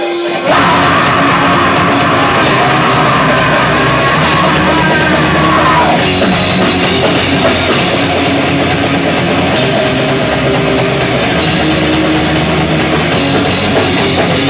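Metal band playing live: distorted electric guitars and drum kit come in all at once about half a second in, loud and dense, with a rising line over the top until about six seconds in, where the riff changes.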